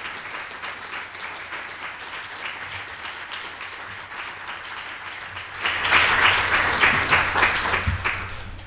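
Conference audience applauding, a dense patter of clapping that swells louder about two-thirds of the way through and then begins to die down.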